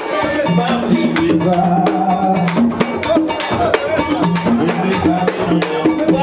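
Live Haitian Vodou ceremonial music: hand drums play a fast, dense beat under group singing, with voices holding long notes.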